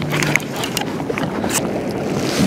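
Steady wind on the microphone and water noise around a kayak, with a few light clicks and knocks at irregular spacing.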